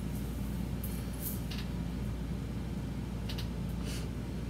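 Steady low room hum, with a few brief soft rustles about a second in and again near the end as hands run through long synthetic wig hair.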